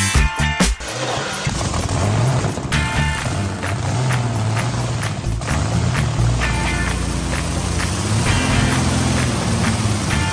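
Rolls-Royce Meteor V12 tank engine running on a test stand through open exhaust ports, a steady low rumble that starts about a second in. Background music plays underneath.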